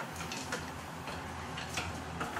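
Pad printing machine at work printing lures: a steady low hum with a few faint, short clicks of its mechanism and the lures being set in place.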